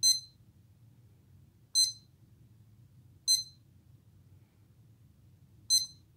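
An electronic push-up counter beeping as its buttons are pressed: four short, high electronic beeps at uneven intervals.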